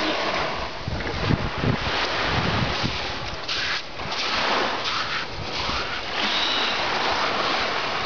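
Surf washing onto a sandy beach as a steady rush of noise, with wind buffeting the microphone in gusts during the first few seconds.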